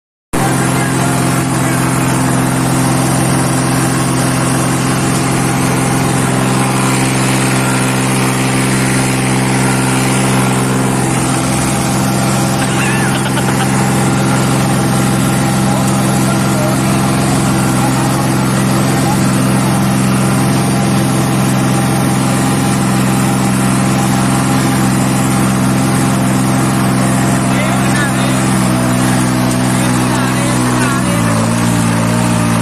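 New Holland 3630 tractor's three-cylinder diesel engine running steadily under load as it pulls a disc harrow through the soil. The engine note dips near the end.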